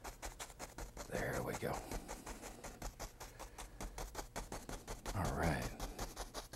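A dry two-inch brush tapped rapidly and evenly against an oil-painted canvas: a fast, soft patter of small taps. This is wet-on-wet misting, blending the base of a mountain.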